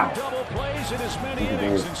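Indistinct talking with background music under it.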